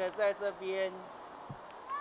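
A high-pitched voice making drawn-out, wordless vocal sounds for about the first second, then only background noise of the pool hall with a soft thump.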